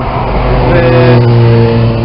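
A motor vehicle passing close by, its steady engine hum and road noise swelling to a peak about a second in.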